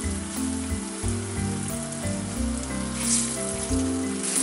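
Floured eggplant cubes sizzling as they fry in hot oil in a pan, the sizzle swelling briefly about three seconds in. Soft background music with changing low notes plays underneath.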